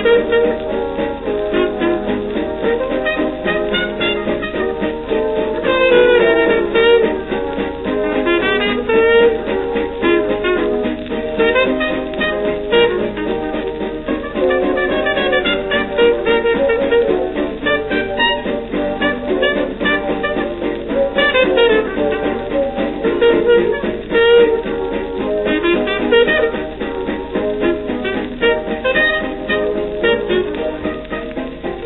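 Hot jazz dance orchestra playing an instrumental chorus of a 1934 recording on a shellac 78 rpm record, with saxophones, brass and a plucked rhythm guitar over a steady dance beat. The sound is thin, with no treble, as on an early record.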